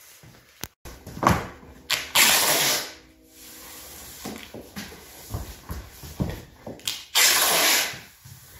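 Masking tape pulled off the roll in two long rasping rips, about two seconds in and again about seven seconds in, with shorter scratches and crinkling of plastic floor sheeting between.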